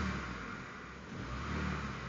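Volvo 740 turbo's engine running, its revs easing down from about 2300 toward 1900 rpm after a rev, a steady low hum.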